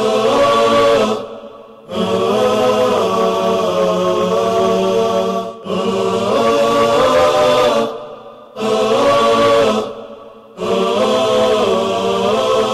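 Theme music for a TV show's opening titles, made of chanting voices without instruments: layered sung phrases a few seconds long, each cut off by a short breath-like pause.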